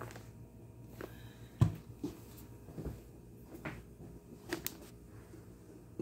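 Handling noise: a string of light knocks and taps, the loudest about one and a half seconds in, over a faint steady low hum.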